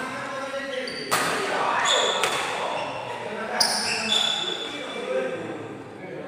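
Badminton rackets striking a shuttlecock three times in a rally, about a second apart, each hit sharp and echoing in the hall. Short high squeaks of shoes on the court floor come between the hits, and voices murmur underneath.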